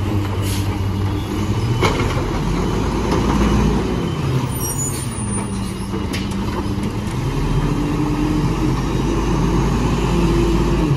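Natural-gas Mack LE garbage truck running close by, its engine note rising and falling as it creeps forward and stops. A few short sharp hisses or clicks, typical of air brakes, are heard in between.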